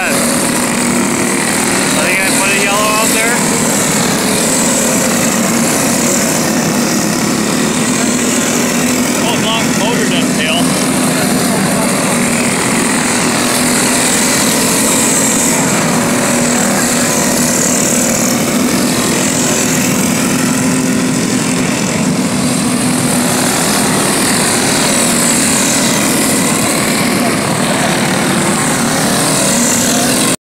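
Several small single-cylinder racing go-kart engines running hard together on a dirt oval, a steady overlapping drone of engines as the karts circle.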